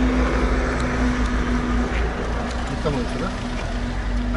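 Wind buffeting a handheld camera's microphone in a steady low rumble, with a steady low hum that is strongest for the first couple of seconds.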